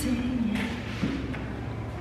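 A woman humming a held note that slides down in pitch, with a light tap about a second in.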